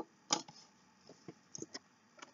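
Small objects being handled: a few sharp clicks and light taps, the loudest about a third of a second in, then a cluster of smaller ticks about a second and a half in.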